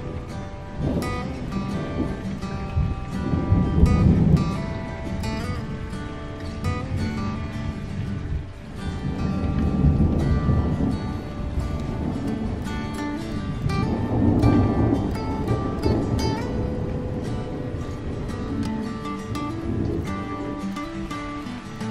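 Background music led by plucked guitar.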